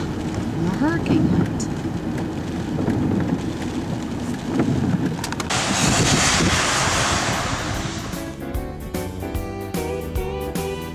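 Low rumble of a car driving in the rain, with faint voices. About five seconds in, a steady hiss takes over for a couple of seconds, and music with a steady beat starts near the end.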